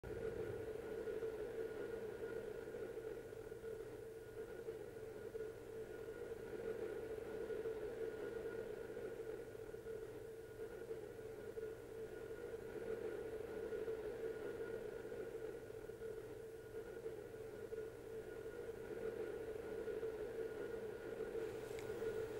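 Faint, steady droning hiss held on a few sustained tones with a low hum under it: the ambient noise intro of an industrial rock track.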